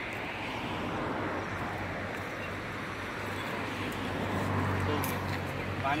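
Road traffic noise with a low vehicle engine hum that swells about four to five seconds in and then fades, under faint background voices.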